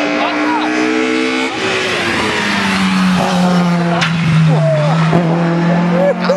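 Rally car engine running hard at high revs as it approaches, its note stepping down to a lower steady pitch about two seconds in and holding there.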